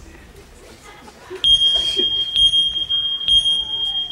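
A high-pitched electronic beep tone played over a theatre sound system, a bomb's warning beep, comes in about a second and a half in. It holds as three long beeps, each about a second, with brief breaks between them.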